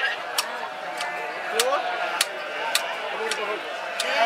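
Wooden treadle spinning wheel in use while wool is spun, giving a sharp click about every half second or so, six in all, over a murmur of voices.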